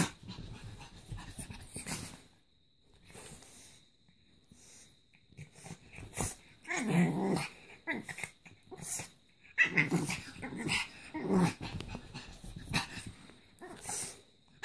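A pug growling and breathing noisily in play, in bursts of about a second, with a quieter stretch between about two and six seconds in.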